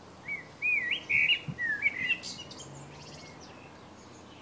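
A songbird sings one short phrase of quick looping notes, rising and falling, lasting about two seconds, against faint steady outdoor background noise.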